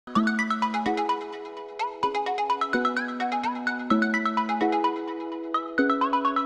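Background music: a bright, bell-like melody of quick notes over held chords that change about once a second.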